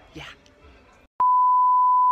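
A steady 1 kHz test-tone beep, the reference tone that goes with TV colour bars, cutting in with a click about a second in and held loud and unchanging.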